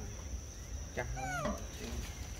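A long-tailed macaque gives a short call about a second in, its pitch bending up and then down.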